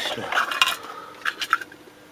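Small components rattling and clinking as a hand rummages through a box of capacitors, with a scatter of short sharp clicks that die away near the end.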